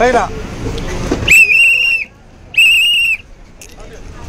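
Two short, shrill whistle blasts about a second apart, each a steady tone lasting under a second: a bus conductor's whistle signalling the driver, heard over the low rumble of the bus.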